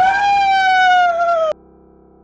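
A man's long, drawn-out scream that rises sharply, holds high and cuts off suddenly about one and a half seconds in. A faint steady music drone carries on underneath.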